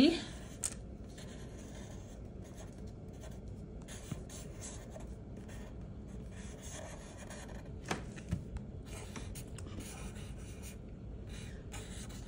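Black Sharpie felt-tip marker drawing on paper: faint, intermittent scratchy strokes of the tip across the sheet, with short pauses between lines. A light tap comes about eight seconds in.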